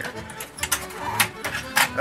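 Sharp clicks and snaps of a switching power supply board being pried out of a metal set-top box chassis as its retaining clips let go. There are several, mostly in the second half, over background music.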